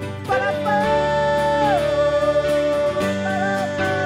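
Live band music: a voice singing long held notes that slide between pitches, over steady guitar and keyboard chords. The voice comes in about a third of a second in.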